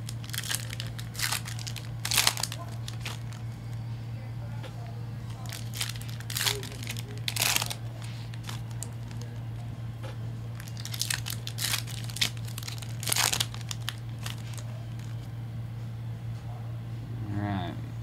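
Hockey card pack wrappers crinkling and tearing as packs are opened and handled, in several short bursts, over a steady low hum.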